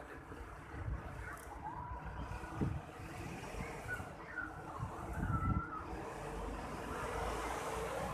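Outdoor city ambience: a steady low rumble of road traffic, growing a little heavier in the second half.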